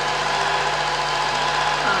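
Film projector running steadily, its motor and film-transport mechanism whirring without a break.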